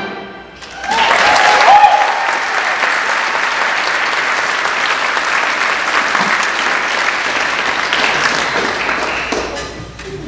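Audience applauding in a reverberant hall as a big band tune ends. The applause swells about a second in, holds steady, and dies away near the end.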